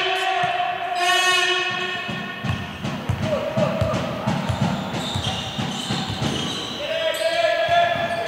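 A basketball dribbled on a sports-hall floor, a run of quick bounces in the middle, with long steady high-pitched squeals sounding at the start and near the end.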